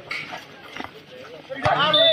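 Volleyball rally: a few short sharp knocks of the ball being played, then men's voices shouting from about one and a half seconds in.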